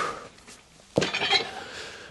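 A short rush of breath at the start, then about a second in a sharp metallic clank with a brief ring as a loaded EZ curl bar and its weight plates are set down.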